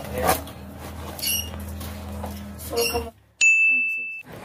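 Paddle hairbrush strokes through long hair, a swish about every second and a half over a low steady hum. About three seconds in the sound cuts out, and a loud steady high-pitched beep follows to the end.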